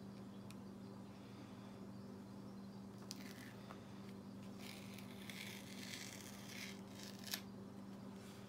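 Painter's tape being peeled off watercolor paper: faint rustling in two stretches, one about three seconds in and a longer one from about four and a half seconds to nearly seven, then a single sharp click near the end.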